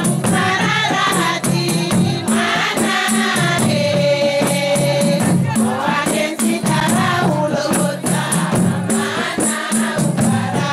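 A group of women singing together over a steady beat of tari frame drums with a rattling, jingling edge. One voice holds a long note about four seconds in.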